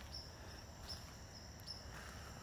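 Faint outdoor ambience: a few short, high chirps over a low, steady hum.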